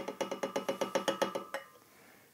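A fast, even run of sharp wood-block-like clicks, about a dozen a second, with a faint steady ringing tone under them; it stops about a second and a half in.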